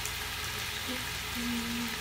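Diced onions and frozen bell peppers sizzling in olive oil in a slow cooker's browning pot, a steady frying hiss.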